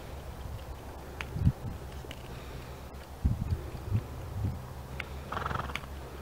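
Horse loping on soft arena sand, its hooves landing in dull, uneven thuds, with a short breathy snort near the end.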